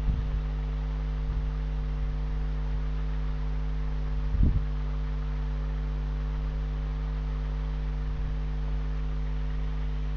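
Steady electrical hum with several overtones, the background of a desk recording, with a short low thump about four seconds in.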